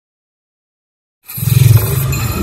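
Silence, then a loud logo-intro sound effect starts about a second and a quarter in: a deep low rumble with hiss on top.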